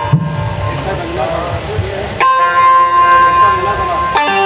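Dholak strokes under a faint voice, then about two seconds in a Roland synthesizer keyboard sounds a bright chord that is held, with the drum falling silent.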